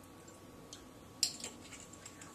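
Quiet room with one light click of a kitchen utensil a little over a second in, and a fainter tick shortly before it.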